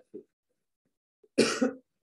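A person coughs once, loudly, about one and a half seconds in.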